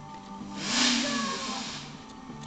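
A firework hissing as it ignites on the ground: a loud rush of hiss that swells about half a second in and fades over the next second.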